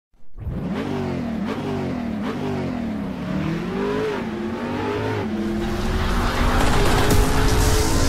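Car engine revving, its pitch rising and falling again and again, then holding a steadier note while a rushing noise builds and grows louder toward the end.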